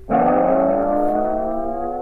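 A sustained held chord of steady tones, slowly rising in pitch, that carries on under the following speech, typical of an edited-in background music or sound-effect drone.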